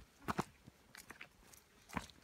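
Footsteps crunching on a dirt and rocky hiking trail: a few separate steps, with a louder pair about a third of a second in and another near the end.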